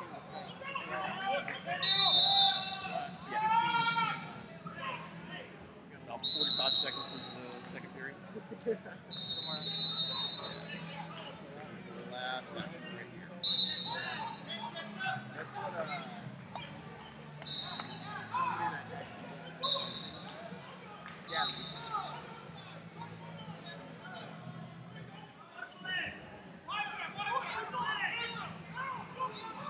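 Voices and calls echoing around a large sports hall, with short high referee's whistle blasts sounding about seven times and scattered thuds.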